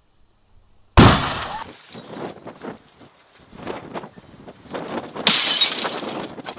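CRT television picture tube being smashed: a sudden loud crash of breaking glass about a second in, dying away into scattered clatter of falling pieces. A second burst of shattering glass comes near the end.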